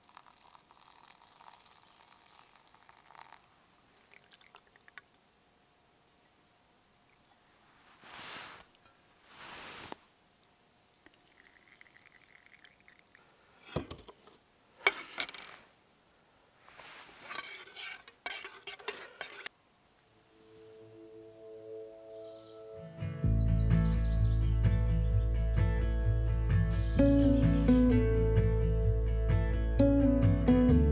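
Camp coffee-making sounds: liquid poured from a small pot and from a carton, with a couple of sharp clinks of metal cookware. About twenty seconds in, background music fades in and becomes the loudest sound.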